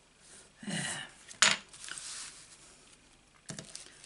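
Handmade cardstock greeting cards being handled and set down on a craft mat: a sharp tap about a second and a half in, a short soft rustle after it, and a lighter tap near the end.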